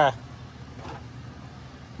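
A 1986 Chevrolet Caprice's 350 V8 idling, a faint steady hum with no sharp knocks or changes.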